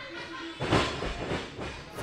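A wrestling ring's mat and boards rumbling and knocking under a wrestler's running steps, starting about half a second in.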